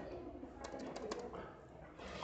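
A few faint, irregular keystrokes on a computer keyboard.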